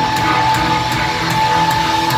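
A rock band playing live: electric guitars, bass and drums, with one long held high note through nearly the whole passage.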